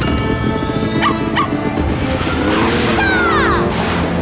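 Cartoon background music with two short dog yips about a second in, then a falling swoosh sound effect near the end as the sleigh speeds off.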